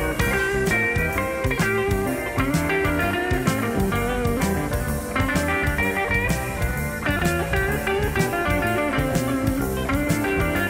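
Instrumental break in an electric blues song: an electric guitar plays lead lines, with bending notes, over bass and a drum kit keeping a steady beat.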